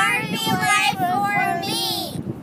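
Children singing together, holding one long note.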